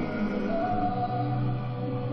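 Choral music with long held sung notes, played as the skater's free-program music.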